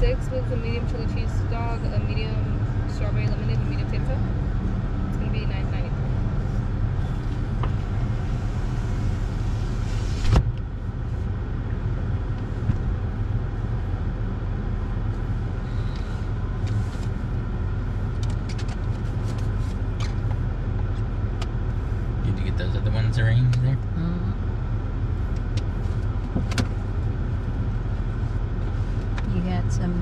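A car idling with a steady low hum, heard from inside the cabin. Faint voices come in over the first several seconds, then a single knock about ten seconds in, after which the outside hiss drops; faint talk returns near the end.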